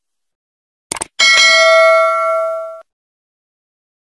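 Subscribe-button animation sound effect: a quick double mouse click about a second in, then a bright notification bell ding that rings for about a second and a half and cuts off suddenly.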